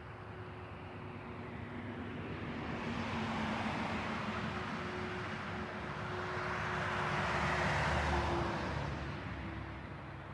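Two road vehicles passing by, the tyre and road noise of each swelling and then fading. The second is louder and peaks about eight seconds in.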